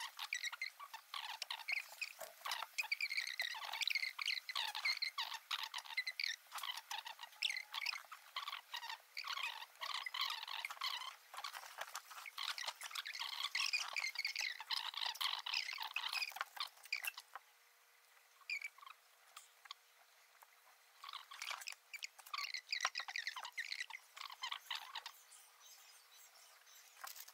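Two people's voices sped up into high, rapid, unintelligible chatter with the low end cut away; it drops away for a few seconds about two-thirds of the way through, then resumes.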